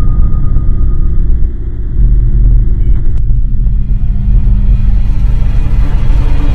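Loud, low rumbling drone of a suspense film soundtrack, steady throughout, with a faint click about three seconds in.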